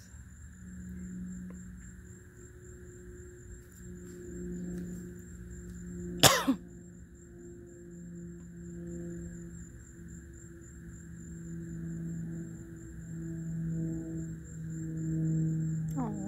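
Low droning music with slowly swelling and fading tones, in the manner of a singing bowl. One sharp, loud, brief sound breaks in about six seconds in.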